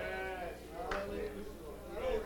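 Faint voices of worshippers calling out in prayer and praise, with a voice that wavers up and down in pitch.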